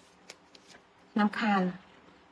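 A woman speaking one short phrase in Khmer about a second in, after a second of faint small clicks.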